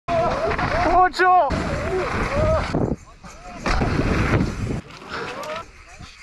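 Wind rushing over the camera microphone and knobby tyres rolling on dirt as a mountain bike rides down a trail, in two loud stretches with quieter gaps between. Short shouts with no clear words come over it, the loudest about a second in.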